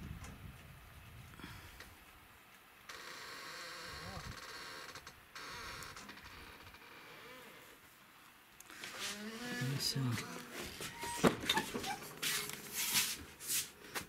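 Sharp clicks, knocks and handling noise in the last five seconds as a door is reached and opened, after a stretch of faint steady hiss.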